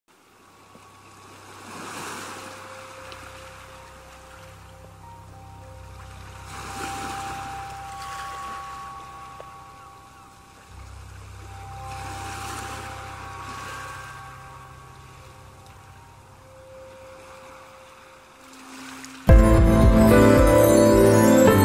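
Ocean waves washing onto a shore, a swell of surf about every five seconds, under soft held notes of a quiet ambient music intro. Just before the end the full band comes in suddenly and much louder.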